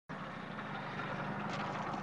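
Small moped engine running steadily at an even pitch.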